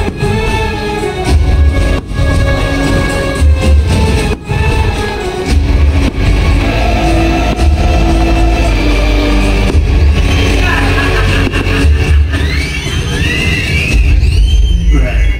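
Fireworks show soundtrack music playing loudly over outdoor speakers, with deep booms and sharp bangs of firework shells bursting through it. Near the end come swooping whistle tones that rise and fall.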